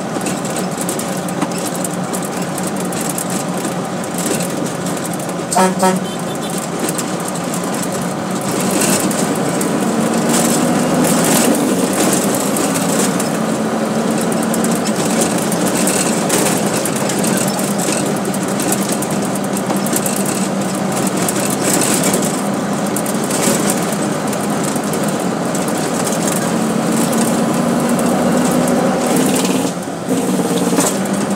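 Truck engine running under load, heard inside the cab with rattle and road noise. The engine pitch climbs and levels off as the driver works through the gears. A short pitched tone sounds about six seconds in.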